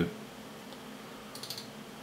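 A quick cluster of light computer clicks about one and a half seconds in, over quiet room tone with a faint steady hum.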